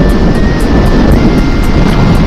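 Zontes V1 350 motorcycle on the move: steady, loud wind rush over the handlebar-level microphone, with the engine running underneath.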